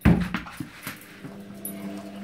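Indesit IWD71451 washing machine on a Cottons 60 wash: a loud sudden sound right at the start, then a few lighter knocks, then a steady motor hum comes in about a second in as the drum turns.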